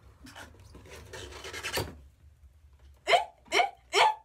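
A cardboard gift box rubbing and scraping as its lid is worked open, then four short, loud, surprised vocal exclamations ('eh!?') from about three seconds in, each falling in pitch.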